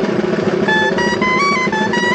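Dulzainas, the Riojan double-reed shawms, playing a dance tune: a loud, reedy melody of short held notes stepping up and down.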